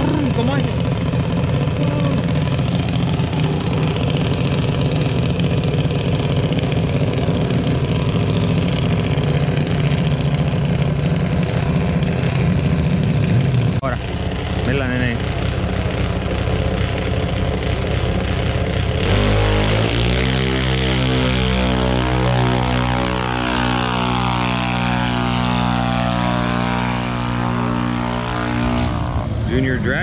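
Race car engines at a drag strip. A steady engine drone runs first; about two-thirds of the way in a louder, strongly pitched engine note takes over and holds for about ten seconds, its upper tones slowly sinking.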